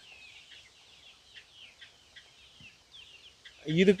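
Birds chirping faintly: a string of short, high calls, each sliding downward.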